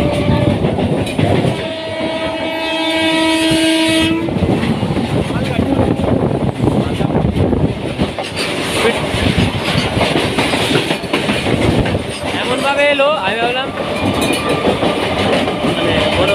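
Train horn sounding for about two seconds, then the rushing clatter of a freight train of covered wagons passing close alongside, heard from the open doorway of a fast-running electric local train.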